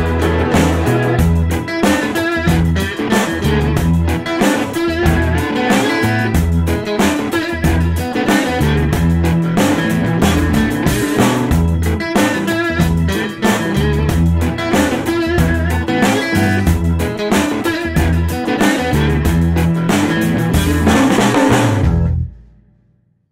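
Blues-rock band playing the instrumental close of a song: guitar over a pulsing bass line and a drum kit keeping a steady beat. The music cuts off at the very end.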